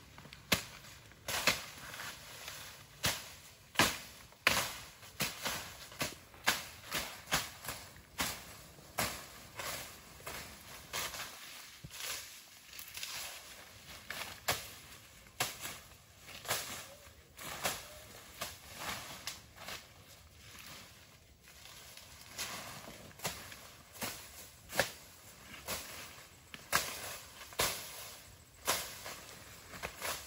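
Brush being cut by hand: a long run of sharp chopping strikes, roughly one or two a second, with short pauses.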